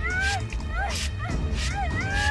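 A trigger spray bottle of cleaning liquid squirting in several short hisses into a girl's face, while she gives a run of short, high, rising-and-falling wordless cries of pain.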